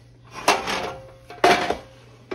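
Two metallic clanks about a second apart, each with a short ring: a metal loaf pan being handled and set down on the counter.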